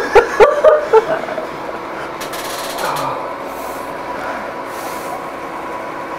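A second of short laughs, then a steady mechanical hum with a faint constant tone running under it.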